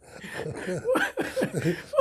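Two men laughing together in a quick run of short laughs.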